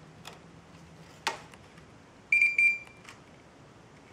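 LTL Acorn 5210A trail camera powering up: a sharp click from its switch being slid to test mode, then about a second later two short high-pitched electronic beeps as the camera comes on.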